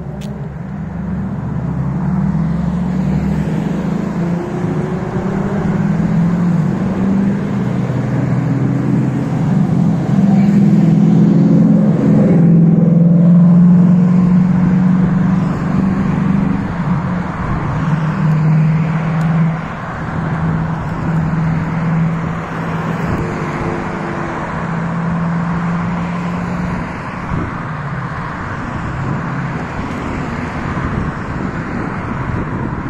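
Road traffic: car engines humming and passing along the street, loudest a little before halfway through.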